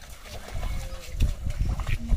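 A pair of bullocks plodding through mud and puddles with a loaded cart: irregular splashing, squelching hoof steps and knocks from the cart.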